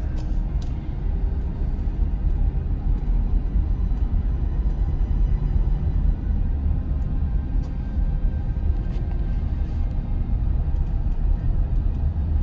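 Steady low rumble of road and wind noise inside the cabin of a moving car.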